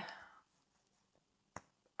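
Near silence, with one short, sharp click about one and a half seconds in.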